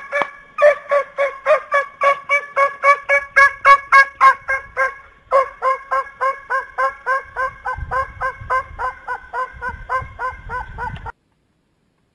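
Domestic fowl calling in a fast, even series of loud honk-like calls, about four a second at a steady pitch. The calls cut off suddenly near the end, with some low rumbling noise under the last few seconds.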